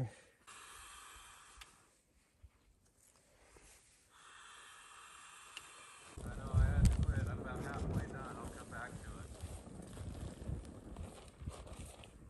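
Fire from a fuel puck and twigs burning in a folding steel Firebox stove: quiet at first, then about six seconds in a loud low rumble of flame with crackling sets in and carries on.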